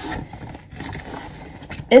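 Faint rustling of a nylon duffle bag being handled as a hand works into its mesh zip compartment, with a single click near the end.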